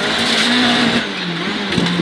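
Renault Clio Williams rally car's 2.0-litre four-cylinder engine heard from inside the cabin at high revs, its pitch falling from about halfway as the driver comes off the throttle, over a steady hiss of tyre and road noise.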